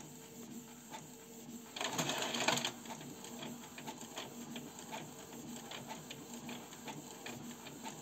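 Canon G3411 and Epson L132 inkjet printers printing in fast mode: the mechanism runs steadily with rapid small ticks, with a louder rushing whirr lasting about a second, about two seconds in.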